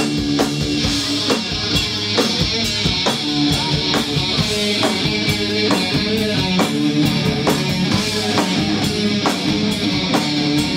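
Grunge rock band playing live: electric guitar and drum kit on a steady beat, in a passage without vocals.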